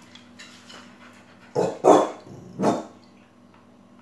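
A dog barking three times in quick succession, about halfway through, the second bark the loudest.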